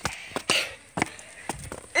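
Footsteps climbing steep stone steps: a string of short, irregular taps and scuffs, about six in two seconds.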